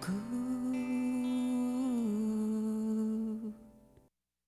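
A voice humming one long held note over a faint sustained backing. The note steps down a little about two seconds in and fades out near the end.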